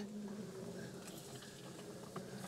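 Kärcher manual push sweeper rolling over concrete, its spinning side brush sweeping grit along the foot of a wall: a faint, steady brushing with a few light ticks.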